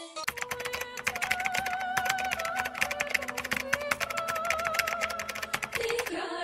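Rapid, irregular clicking like typing, many clicks a second, over a held, wavering melodic tone that changes pitch a few times. It starts just after the opening and cuts off just before the end.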